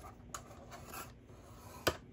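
Bone folder drawn along cardstock in the groove of a plastic scoring board, a faint scraping rub, with a sharp click near the end.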